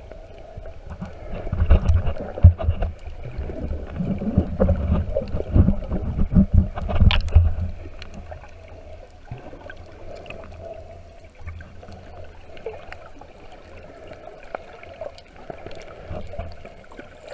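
Muffled underwater water noise from a camera held in the sea: sloshing and gurgling, with a run of loud low bumps and rumbles in the first half, settling into a quieter steady wash.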